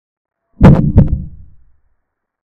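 Chess-board app's piece-capture sound effect: two sharp wooden knocks less than half a second apart, fading quickly.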